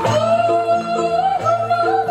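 Nepali folk song playing: a singer holds one long, wavering note over an accompaniment of short plucked notes and bass repeating about twice a second.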